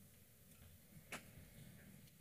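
Near silence in a quiet hall, broken by a single short click about a second in.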